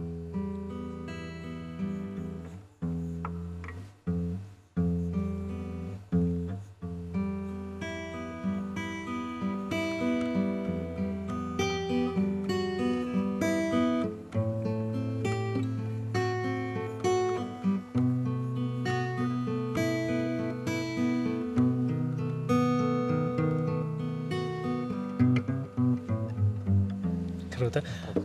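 Acoustic guitar played solo: a melody of plucked notes over low bass notes, running on without a break.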